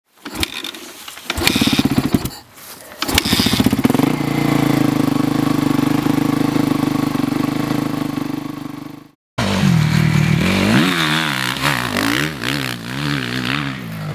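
Suzuki RM-Z450 motocross bike's four-stroke single-cylinder engine starts with a few loud firing pulses, cuts briefly, catches again at about three seconds and settles into a steady idle. After a sudden break at about nine seconds it revs repeatedly up and down as the bike is ridden.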